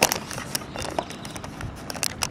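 Handling noise from a handheld camera rubbing and knocking against a shirt: a few scattered clicks and rustles over a low background hiss.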